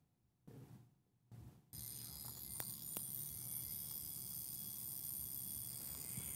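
Two faint sharp clicks about half a second apart from a Zenith Pilot Doublematic's controls being worked as the watch is set. They sit over a steady faint hiss that starts a little under two seconds in, after near silence.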